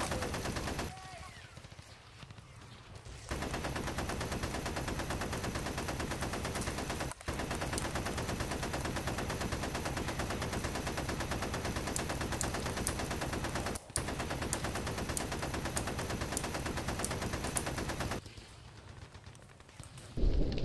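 Automatic gunfire: a submachine gun firing rapid shots in long unbroken strings, starting a few seconds in and lasting about fifteen seconds, with two short breaks.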